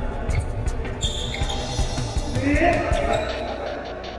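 Badminton doubles rally: repeated sharp racket strikes on the shuttlecock and players' footfalls on the court, with a brief voice calling out between two and three seconds in.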